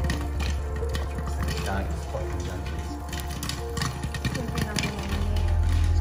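Popcorn kernels crackling in hot oil under the glass lid of a pan: a rapid, irregular run of small clicks, with music playing over it.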